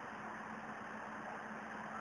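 Faint, steady background noise: an even hiss with a low hum underneath, without change.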